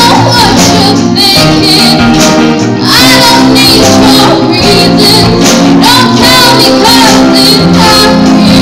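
A live band song: a singer holding long, wavering notes into a microphone over acoustic guitar and drums, loud throughout.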